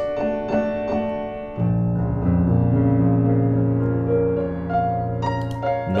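Steinway grand piano playing a loud passage, heard through a pair of tiny Herald SWM-100 cardioid condenser mics in ORTF stereo, with extended high-frequency response. A deep bass chord comes in about a second and a half in and rings on under the higher notes.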